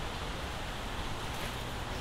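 Steady background noise, an even hiss over a low rumble, with no distinct sounds standing out.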